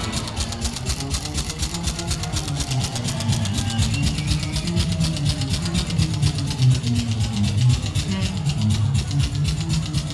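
Rockabilly band playing live: electric guitar and bass over a fast, steady drum beat.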